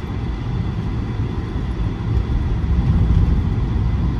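Interior noise of a 1985 Mercedes-Benz 380SE under way: its 3.8-litre V8 and the tyre and road rumble make a steady low drone. It grows a little louder partway through.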